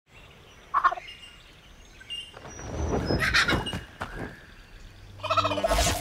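Kookaburra calls in bursts: a short call about a second in, a loud run of rapid cackling calls around the middle, and another call near the end with a low thump under it.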